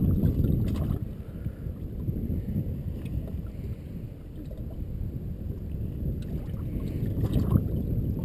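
Wind rumbling on the microphone and small waves lapping against the hull of a drifting fishing boat, an uneven low wash with no engine note.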